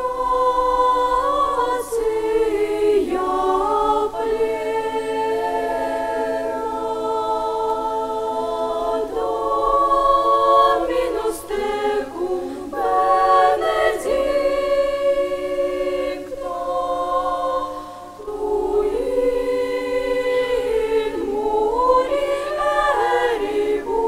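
Children's choir singing unaccompanied in long held chords, phrase after phrase, with a brief breath pause about eighteen seconds in.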